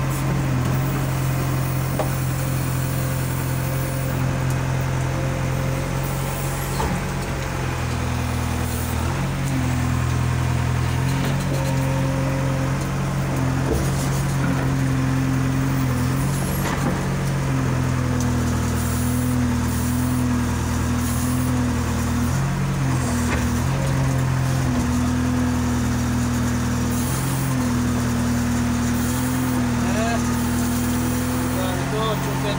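JCB 3DX backhoe loader's diesel engine running, heard from inside the cab. Its steady drone dips and rises every few seconds as the backhoe's hydraulics are worked and the engine takes load.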